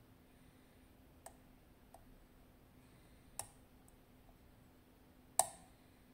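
Sharp metallic clicks from a lockpick and tension wrench working the wafers of a partially gutted Miwa DS wafer-lock cylinder. There are four clicks: small ones about a second and two seconds in, a louder one about three and a half seconds in, and the loudest near the end.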